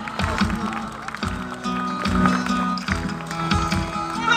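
Live band accompaniment over stage loudspeakers, recorded from the audience: held notes, bass notes and drum beats in a short instrumental stretch between sung phrases.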